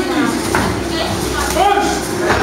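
Several men's voices shouting and calling out across each other at ringside, loud and drawn-out, echoing in a hall.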